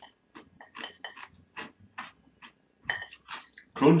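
A person chewing a mouthful of haggis: scattered short clicks and smacks, with a spoken word near the end.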